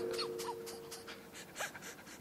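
A man laughing quietly in short breathy puffs, with no voice in it, over a faint steady hum.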